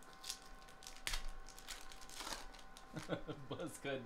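Foil wrapper of a trading-card pack being torn open and crinkled, in irregular crackling strokes with the sharpest rip about a second in. A man's voice comes in near the end.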